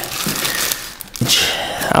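Plastic packaging and a sticker sheet crinkling and rustling as they are pulled out of a cardboard box, with a louder rustle just after a second in.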